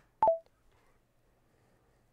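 A short electronic beep of two quick notes, a higher one dropping to a lower one, from the AlwaysReddy AI assistant. It is the audio cue that its hotkey has ended voice recording.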